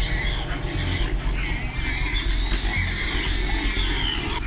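Pigs squealing in a confinement barn: repeated high, wavering squeals, over background music with a low pulsing beat.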